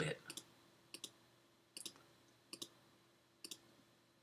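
Five faint, sharp computer clicks, each a quick double click like a button pressed and released, spaced a little under a second apart.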